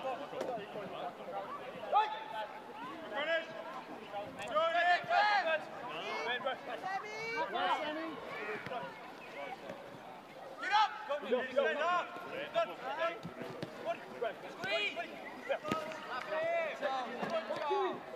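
Footballers' voices shouting and calling to one another across the pitch during open play, with a few sharp knocks of the ball being kicked.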